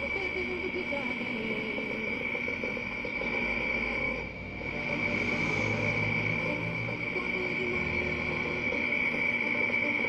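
Crystal radio playing a weak AM broadcast station, switched in through a wave trap coil: a voice from the station comes through faintly under a steady high-pitched whistle. The sound cuts off suddenly at the end.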